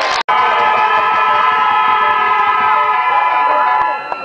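Several horns blown together as one loud, steady, clashing blare held for over three seconds, some dropping out near the end. The audio cuts out for an instant just after the start.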